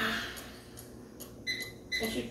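Microwave oven keypad beeping as its buttons are pressed: two short, high, steady beeps about a second and a half in, close together.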